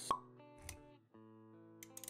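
Intro music for an animated title sequence: a sharp pop sound effect right at the start, then held chords.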